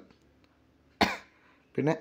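A single short cough about a second in, after a moment of near silence.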